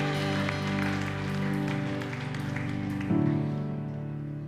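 Slow instrumental worship music on a Nord Stage stage keyboard: held chords ringing on, with a new chord struck about three seconds in.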